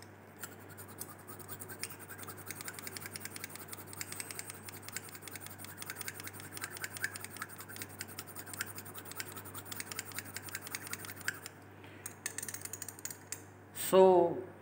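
Glass rod scratching rapidly against the inner wall of a glass test tube, a fast run of small scrapes with a short break near the end. The scratching is done to start a precipitate forming in a succinic acid solution after calcium chloride has been added.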